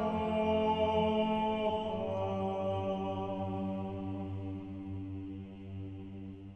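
Mixed choir singing a hymn's closing chords, sustained and steady. The chord changes about two seconds in, and the sound then slowly fades away.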